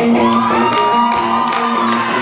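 A live rock band keeps playing a repeating riff with drums while the crowd cheers and claps along; one long high whoop rises and holds for over a second.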